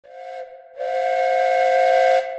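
Steam train whistle sounding two tones together: a short toot, then a longer, louder blast starting just under a second in.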